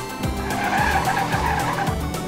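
A tyre-skid sound effect, a noisy screech lasting about a second and a half that starts about half a second in, laid over background music with a steady beat.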